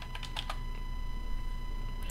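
Computer keyboard keystrokes: a few quick clicks in the first half second, then only a steady low electrical hum.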